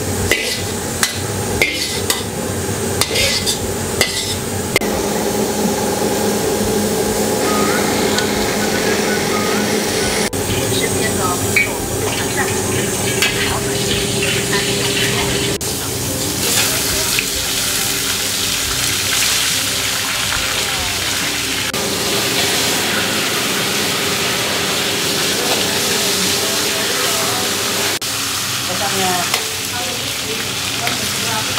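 Fish frying in hot oil in a wok, sizzling steadily. A metal spatula clicks and scrapes against the wok in the first few seconds. The sizzle grows louder about sixteen seconds in, as more fish goes into the oil.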